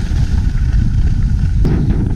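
Wind buffeting the microphone of an action camera moving at speed down a ski slope: a loud, low, rumbling roar, with one short sharp knock about a second and a half in.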